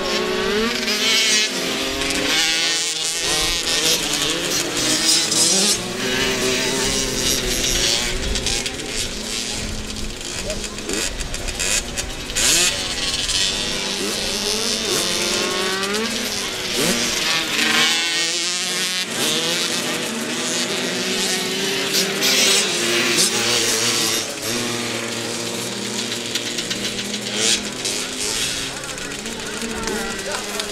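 Several small two-stroke 65 cc youth motocross bikes racing through a corner, their engines revving up and down over one another as they pass, with no let-up.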